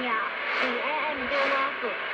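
Speech from a medium-wave AM broadcast on 1422 kHz, coming through a Sangean ATS-606 portable radio's speaker. It sounds muffled and thin, with a steady hiss of weak long-distance reception underneath.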